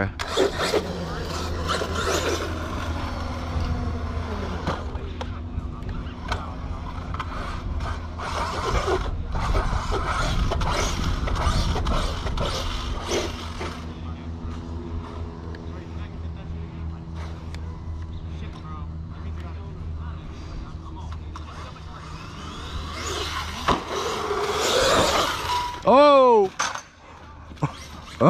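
Arrma Outcast 8S RC truck's brushless electric motor whining, its pitch rising and falling as it speeds up and slows, over a steady low rumble. Near the end the pitch dips and climbs again quickly.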